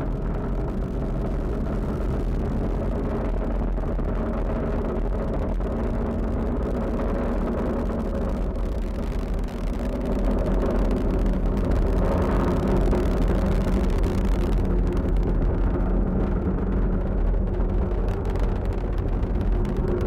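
Falcon 9 rocket's first stage, nine Merlin 1D engines, rumbling steadily in ascent, heard from far off on the ground. The rumble grows a little louder about ten seconds in.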